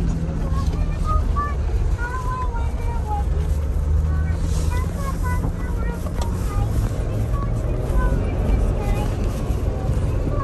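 Steady low rumble of a Jeep Gladiator driving over a rough dirt trail, heard from inside the cab, with faint voices in the background.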